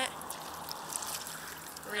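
Faint, steady trickling of shallow seawater around red seaweed lifted by hand, with a few small drips.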